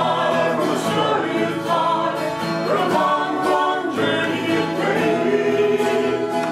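A man and a woman singing a song together, accompanied by acoustic guitar.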